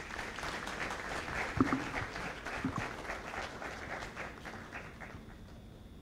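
Audience applauding, a dense patter of many hands clapping that gradually dies away toward the end.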